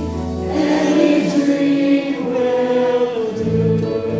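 Music: a choir singing held chords with accompaniment. A deep bass note drops out about half a second in, and lower notes enter near the end.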